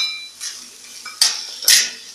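Steel spoon stirring and scraping chopped vegetables in a steel kadhai over a steady sizzle of frying oil, with a short ringing clink of metal at the very start and two louder scraping rushes after about a second.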